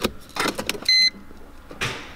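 Mercedes-Benz W210 trying to start but not cranking: a few short electrical clicks and a brief electronic beep from the instrument cluster about a second in, as the cluster drops out and resets. It is the short 'Geräusch' the car makes on every start attempt, which the mechanic traces to the circuit losing power, a missing ground.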